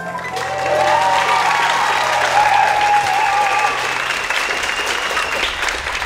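Theatre audience applauding and cheering, with voices whooping over the clapping in the first few seconds. The last held chord of the music fades out underneath.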